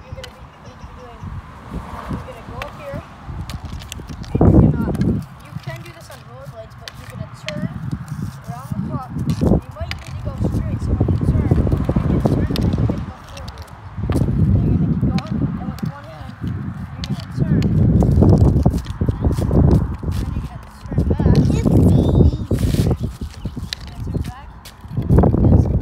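Ice hockey stick blade clicking and scraping on asphalt during stickhandling, with many sharp irregular clicks over bursts of low rumbling noise.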